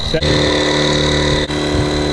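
A battery-powered electric inflator pump hums steadily as it inflates the tubes of an inflatable boat, with a short dip about one and a half seconds in.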